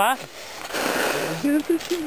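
A brief rustling noise of a plastic raincoat close to the microphone, followed near the end by a faint low voice.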